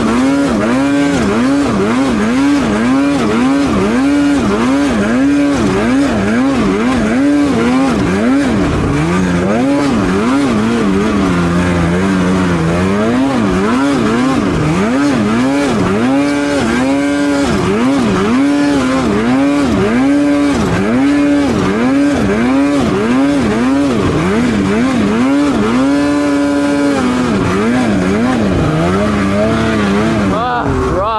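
2024 Polaris Patriot Boost snowmobile's turbocharged two-stroke engine revving up and down over and over, about one to two times a second, as the throttle is worked climbing a steep slope through trees in deep snow.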